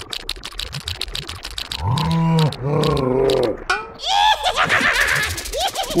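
Cartoon sound effects and a character voice: a fast rattling clatter for about two seconds, then a low drawn-out groan in two parts from the cartoon larva, then more rattling with short squeaky cries near the end.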